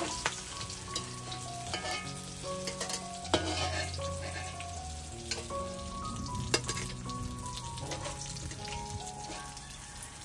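Milkfish steaks sizzling steadily as they fry in oil in a metal wok. A metal spatula and fork scrape and click against the wok a few times as pieces are lifted out.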